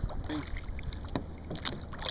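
Wind rumble on the microphone with a few light knocks as the fish and gear are handled in a kayak, plus a brief vocal sound about a third of a second in.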